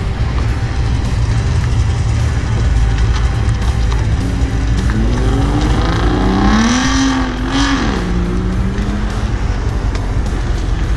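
A car engine accelerating: its pitch climbs steadily for about three seconds, drops sharply with a gear change about eight seconds in, then holds steady for a second. Music plays underneath.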